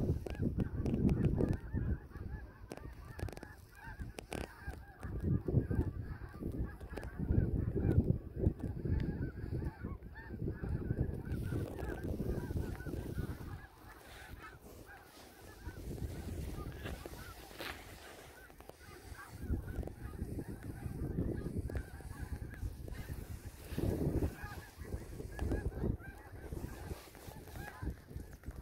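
A large flock of snow geese calling in flight overhead: many birds at once in a continuous, overlapping high-pitched chatter of calls. Gusts of wind noise come and go underneath.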